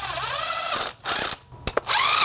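Cordless 1/4-inch impact driver running on a bolt, its motor pitch dipping and recovering as it loads up. It stops about a second in, gives a couple of brief clicks, and starts up again near the end.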